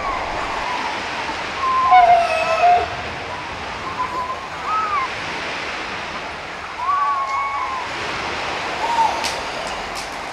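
Steady rushing of wind and surf, with short wavering pitched calls every second or two, some held for about half a second.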